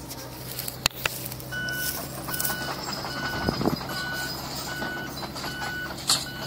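Backup alarm of a construction vehicle beeping steadily, short beeps of one pitch repeating a little more than once a second, starting about a second and a half in, over a steady low engine drone. A single sharp click about a second in.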